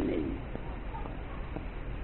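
A pause in a monk's spoken sermon. His voice trails off just after the start, leaving steady recording hiss and low hum with a few faint ticks.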